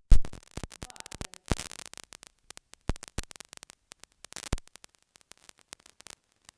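Irregular crackling clicks and pops, like static on the audio line, denser and louder in the first half and thinning out toward the end.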